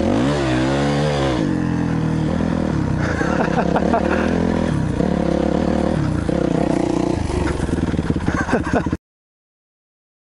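Dirt bike engine running while riding, its pitch rising and falling with the throttle, with a big rev in the first second or so and shifts in pitch every couple of seconds after. The sound stops abruptly near the end.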